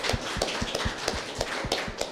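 A small audience applauding: a dozen or so people clapping, the separate claps distinct and uneven, several a second.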